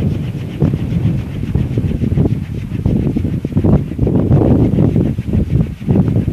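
Sundanese kolecer, wooden propeller windmills on tall bamboo poles, whirring in the wind with a loud, low rumble that surges and fades unevenly.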